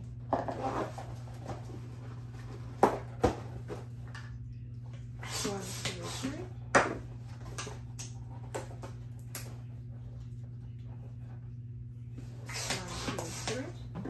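A hand balloon pump filling small 5-inch latex balloons in short runs of three strokes, with the latex handled and knotted in between, giving a few sharp snaps and clicks. A steady low hum runs underneath.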